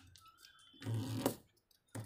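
Origami paper being handled and creased against a table, with a short rustle about a second in.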